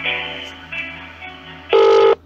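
Telephone hold music over the phone line, slowly fading. Near the end it is cut across by a much louder ringing tone, the first half of a British double ring, as the held call rings through to an advisor.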